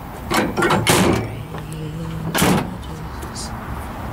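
Pickup tailgate on a 2013 Ford F-150 being raised and shut. There are knocks and clatter in the first second, then a sharp latching bang about two and a half seconds in.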